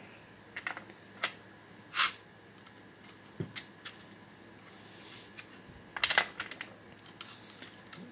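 Brass .22 Hornet cases clinking and an RCBS hand priming tool clicking as cases are handled, set into the shell holder and primed. Scattered sharp clicks, the loudest about two seconds in and a cluster around six seconds.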